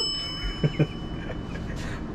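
A bell-like ding sound effect, struck just before and ringing out, its tone fading away over nearly two seconds. A few soft low knocks come about half a second in.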